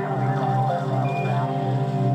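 Live instrumental music on keyboards, synthesizers and electric bass: a steady low drone under a gliding, bending lead line, with a short high tone about a second in.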